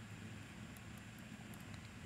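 Quiet room tone: a faint steady low hum under light hiss, with no clear event.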